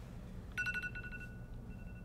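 Phone ringing: a ringtone of two steady high tones, with a short run of pulses above them, starting about half a second in. The higher tone stops after about a second while the lower one carries on.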